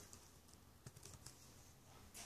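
Faint, scattered keystrokes on a computer keyboard as a password is typed in, a few soft clicks about half a second apart.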